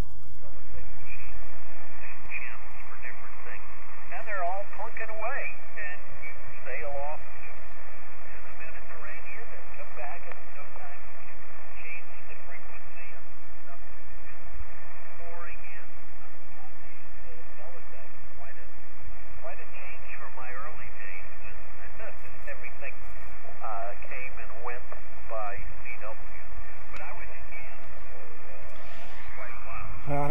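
Yaesu FT-817ND transceiver's speaker playing the amateur band: a steady, thin-sounding hiss of band noise with weak, garbled voices of distant stations fading in and out.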